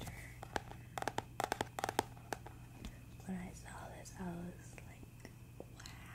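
A quick run of sharp taps about a second in, fingernails tapping on the boxed Zoom H1n recorder close to the microphone, followed by two short voiced sounds.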